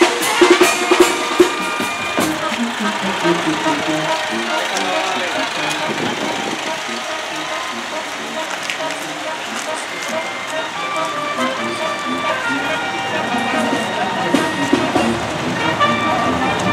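Procession crowd voices mixed with music, with sharp drum beats during the first second and a half.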